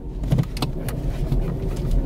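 Car cabin noise while driving: a steady low rumble from the moving car, with a few short clicks about half a second and a second in.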